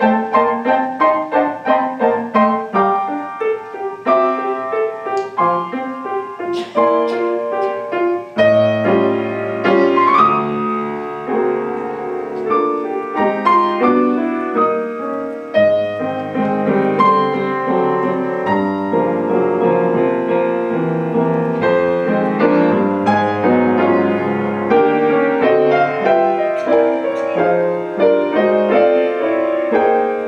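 A Yamaha Conservatory grand piano played solo. A run of quick, evenly struck notes and chords in the first several seconds gives way to fuller, longer-held chords over deep bass notes.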